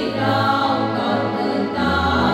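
Small women's choir singing a hymn in unison into microphones, with an electronic keyboard accompanying. The voices hold long notes and move to a new note near the end.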